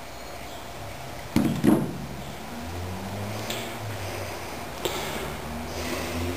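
Two sharp knocks about a second and a half in and a lighter click near the end, from handling the multimeter and the test-rig fittings, over a low steady hum.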